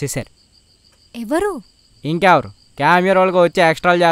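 Crickets chirping steadily in a thin, high, continuous trill, under a man's voice in short, drawn-out phrases whose pitch bends up and down.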